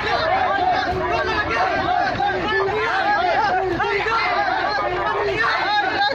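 Several men's voices talking and calling over one another in a dense, steady babble with no single clear speaker.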